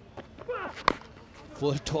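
A cricket bat strikes a tape-wrapped tennis ball once, giving a single sharp crack about a second in.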